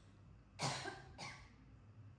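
A person coughing twice, the first cough about half a second in and louder, the second shorter, just after a second in.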